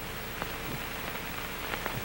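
A gap in the band music filled only by the steady hiss and crackle of an old optical film soundtrack, with a few faint clicks.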